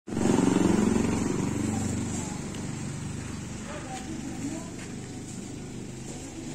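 An engine running, loudest in the first second or two and then fading away.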